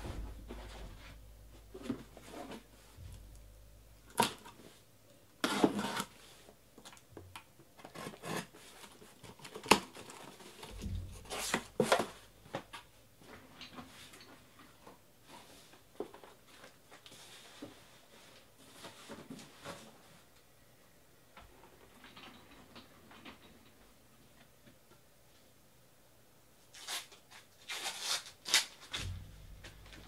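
Cardboard shipping case being opened by hand and shrink-wrapped hobby boxes of trading cards slid out and set down in a stack on the table: irregular scrapes and rustles of cardboard and plastic wrap with sharp taps, coming in a few louder clusters.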